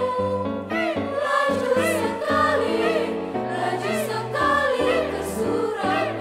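Mixed choir of men's and women's voices singing in harmony, part of a medley of Indonesian regional songs, with sustained notes changing every half second or so and short crisp accents.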